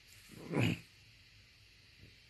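A single short, heavy breath or snort through the nose close to the phone's microphone, about half a second in.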